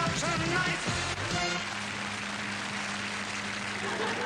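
A 1980s TV comedy show's theme music ending about a second and a half in, followed by a steady hiss with a low, even hum.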